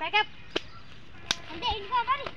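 Children's voices in short, high-pitched bursts, with two sharp cracks about half a second apart from each other's neighbours: one just over half a second in and one about a second and a third in.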